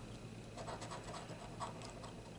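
A coin scraping the coating off a lottery scratch-off ticket in short, faint strokes.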